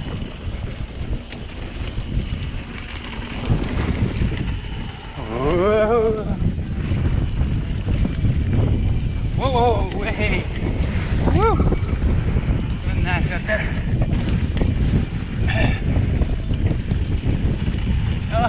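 Wind buffeting the microphone over the low, steady rumble of mountain bike tyres rolling down a dusty dirt trail, with a few short voiced calls in the middle.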